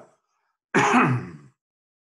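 A man clearing his throat once, a short burst a little under a second long.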